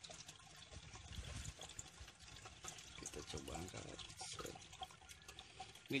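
Faint aquarium water sloshing and dripping as a hand reaches into the tank and lifts a wristwatch out of the water.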